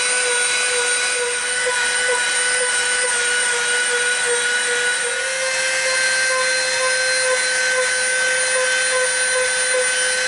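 Dremel rotary tool with a sanding drum running at high speed against EVA foam, grinding a soft rounded edge: a steady high-pitched whine over a sanding hiss, its pitch stepping up slightly about halfway through.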